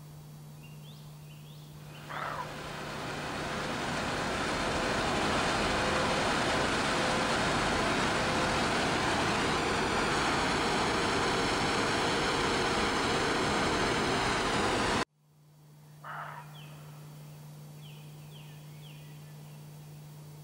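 Loud, steady rushing roar of gas flares burning at a drilling site. It fades in about two seconds in and cuts off abruptly about fifteen seconds in. Before and after it, faint bird chirps over a low steady hum.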